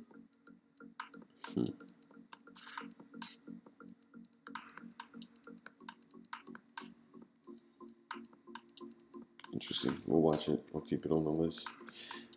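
Typing on a computer keyboard and clicking a mouse, a quick irregular run of light keystrokes and clicks. A short burst of voice sounds comes near the end.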